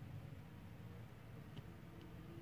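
Near silence: faint room tone with a steady low hum and one faint small tick about one and a half seconds in.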